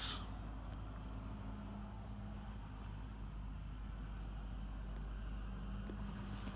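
Faint steady low hum of machinery with no other events.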